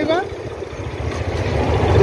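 Low rumble of an approaching electric local train, growing steadily louder.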